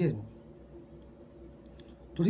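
A man's voice ends a word at the start, then a pause of faint room noise with a few faint clicks near the end.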